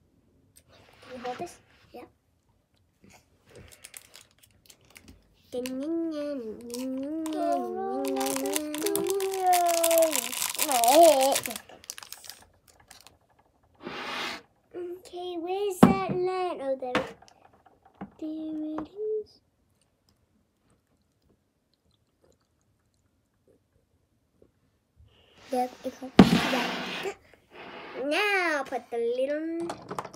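A child's wordless voice rising and falling in pitch, with a sharp knock about halfway through and a brief loud rushing noise near the end.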